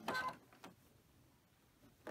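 A short two-tone electronic beep from the sewing machine's controls, then a faint click and near silence.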